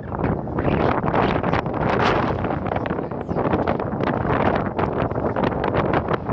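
Wind buffeting the microphone: a loud, irregular gusting rumble with no let-up.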